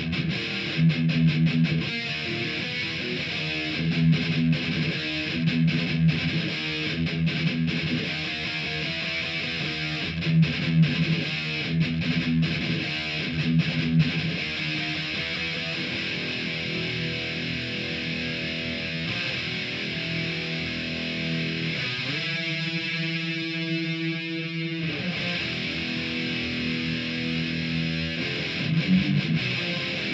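Distorted high-gain electric guitar playing a thrash metal riff, stop-start in the first half. A little past the twenty-second mark the bass drops out for about three seconds, leaving a thinner sound, before the full sound returns.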